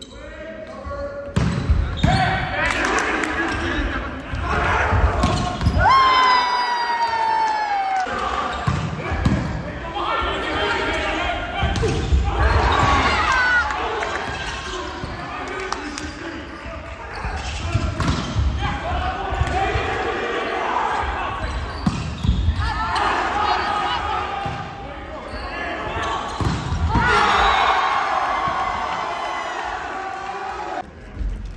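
Volleyball rally: the ball is served and hit, with repeated sharp smacks of the ball off hands and the gym floor. Players and spectators shout throughout, and there is a burst of shouting and cheering near the end as the point is won.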